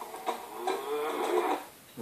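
Film soundtrack music playing from a television, picked up in the room by a phone's microphone, with a wavering pitched sound in the middle.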